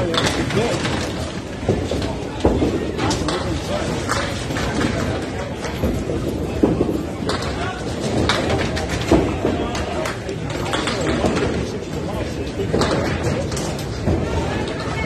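Candlepin bowling alley sounds: balls rolling on the wooden lanes and sharp knocks of balls and pins scattered throughout, over voices in the hall.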